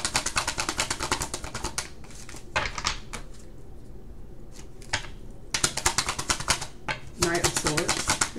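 A tarot deck being shuffled by hand: a fast flutter of cards snapping against each other, about ten clicks a second, that stops about two seconds in. A couple of single card snaps follow, then a second fast flutter runs for about a second and a half near the end, as the reader shuffles until a card comes out.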